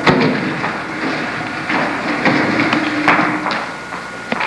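A wooden chair set down on a stage floor with a sharp thump, followed by scattered knocks and footsteps as actors move about and sit down, over a faint steady hum.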